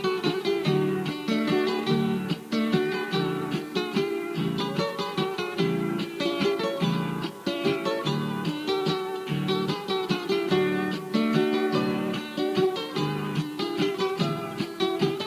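Two acoustic guitars playing an instrumental interlude of a Cuyo folk waltz: a picked melody line over strummed accompaniment, with no singing.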